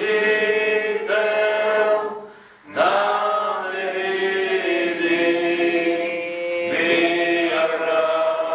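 Voices singing a slow religious chant in long held notes, with a brief pause for breath about two and a half seconds in.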